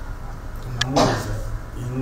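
A man talking in a local language, not English, with a brief sharp click and a louder noisy burst about halfway through.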